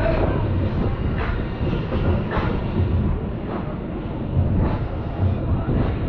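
Wind rushing over the microphone and the rumble of an SBF Visa tower plane ride's gondola in motion, with a swish or rattle about once a second.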